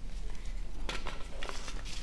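A few faint, short clicks and rustles of objects being handled, over a low steady room hum.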